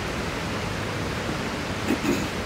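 Steady, even background hiss with no distinct event, a brief voice just before the end.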